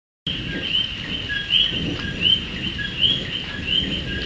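A chorus of coqui frogs calling, each call a short lower note followed by a higher rising note, repeating about every second's fraction and overlapping, over a low background rumble. The sound starts suddenly about a quarter second in.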